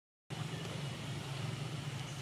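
Steady low outdoor background rumble that starts abruptly about a third of a second in, with no animal calls.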